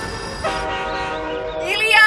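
Train horn sounding a long, steady chord that starts about half a second in. A voice rises over it near the end and is the loudest part.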